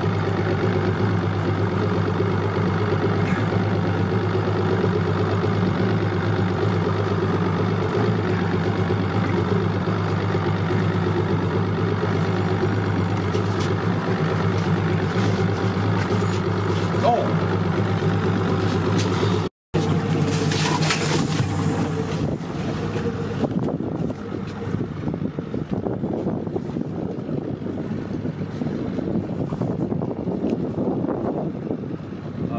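Boat engine idling steadily. After a brief dropout about two-thirds through, the engine fades and wind and water noise take over.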